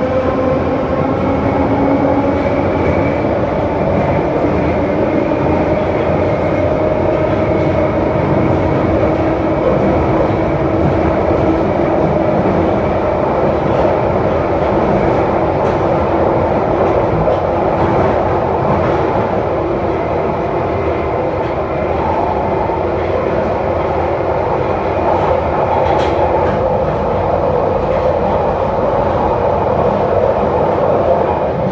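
Interior of a London Underground 1972-stock tube train running at speed through a tunnel: a steady, loud rumble of wheels on rail with a motor whine that rises a little in pitch over the first several seconds, then holds steady.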